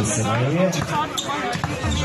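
A basketball being dribbled, bouncing on the court a few times, under a steady babble of spectators' and players' voices.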